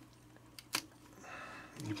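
Fingers handling the plastic housing of a partly disassembled JBL Clip+ Bluetooth speaker: one sharp plastic click about a third of the way in, then a faint scraping, with a man starting to speak near the end.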